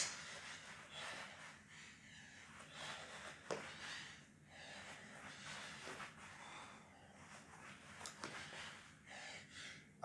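A man's faint, hard breathing from exertion, breaths coming in soft irregular swells, with one light tap about three and a half seconds in.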